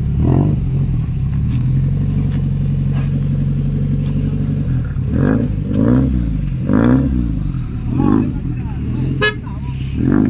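Lancia Delta HF Integrale's turbocharged four-cylinder engine idling steadily, then revved in four quick blips from about halfway, each rising and falling in pitch. A sharp click comes near the end.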